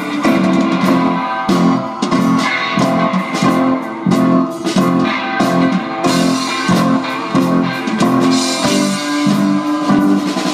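Live band playing an instrumental break, electric and acoustic guitars strumming in a steady, even rhythm.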